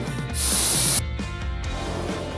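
A short blast of compressed air from a handheld air blow gun, a hiss lasting about half a second that starts about half a second in, used to blow aluminium chips off the wheel repair machine.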